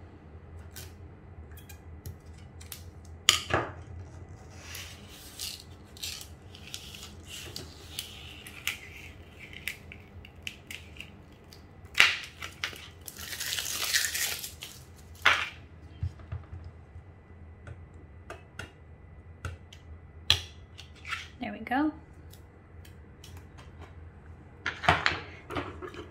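Metal Cricut weeding hook picking at cut vinyl on its paper backing, making scattered light clicks and taps. About halfway through there is a rasping peel of about two seconds as the excess vinyl is pulled away.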